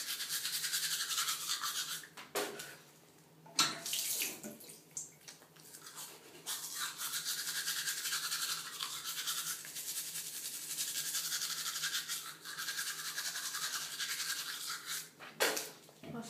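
Manual toothbrush scrubbing teeth in rapid back-and-forth strokes, with a short break about three seconds in and a brief lull a couple of seconds later, then steady brushing until it stops just before the end.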